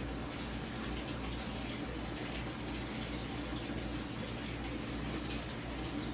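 Steady bubbling and trickling of water from the pond's air-line aeration, over a low steady hum.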